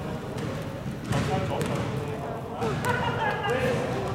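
A basketball bouncing a few times on an indoor court floor, with players' voices in the hall.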